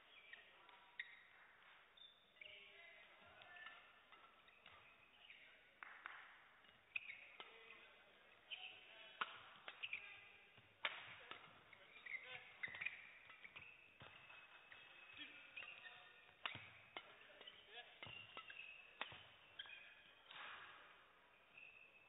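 Badminton rally: rackets striking the shuttlecock again and again at irregular intervals, with short squeaks of shoes on the court floor.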